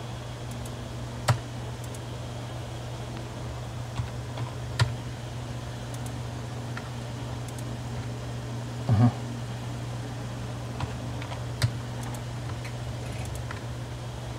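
Scattered single clicks of computer keyboard keys and mouse buttons, a few seconds apart, over a steady low hum.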